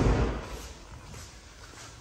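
The end of a car door shutting: a single heavy thump that dies away within about half a second, then quiet showroom room tone with the engine switched off.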